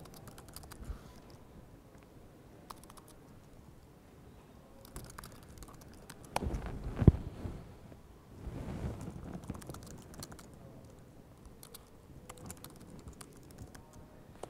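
Typing on a laptop keyboard: scattered, light key clicks as commands are entered, with one louder thump about seven seconds in.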